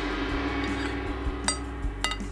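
A gong's sustained ring slowly fading out, struck on the countdown to start eating. About one and a half seconds in, a metal fork clinks sharply on a ceramic plate, with a fainter clink near the end.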